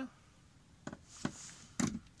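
Baking paper rustling as it is pulled off a metal rotisserie spit, with a couple of light clicks, then a brief voice sound near the end.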